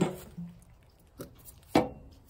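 Sharp knocks of hard objects striking, each ringing briefly: one at the start, a faint one past the middle, and the loudest near the end.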